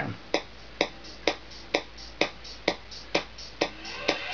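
Traktor's master tempo tick, a metronome click played through a small speaker from the headphone output, keeps time at 128 BPM with the track turned down: sharp even clicks about two a second over a low hum.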